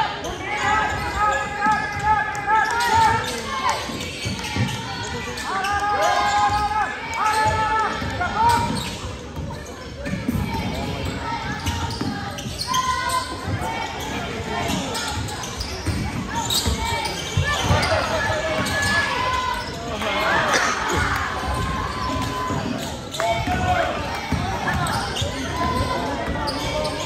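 Basketball game on a hardwood gym court: the ball is dribbled in repeated bounces, shoes squeak in short bursts and voices call out across the echoing gym.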